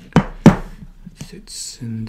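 Two sharp knocks about a quarter of a second apart, the second the louder, as a metal snap-setting anvil plate and the leather tab are handled on the bench, followed by a few light clicks; a man's voice starts near the end.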